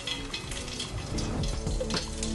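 An egg sizzling as it fries in hot oil in a pan.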